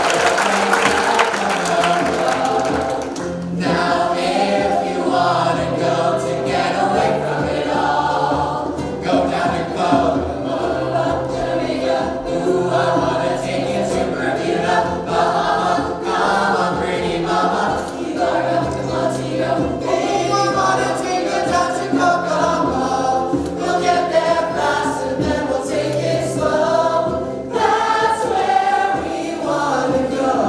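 A large cast singing together in chorus over instrumental accompaniment with a steady bass line, a stage musical number.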